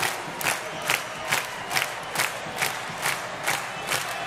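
Ice hockey arena crowd clapping together in a steady rhythm, about two and a half claps a second, over general crowd noise and cheering.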